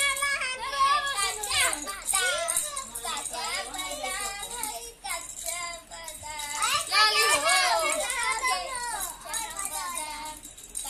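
Small children's high-pitched voices chattering and calling out as they play, almost without a break, with short lulls about halfway through.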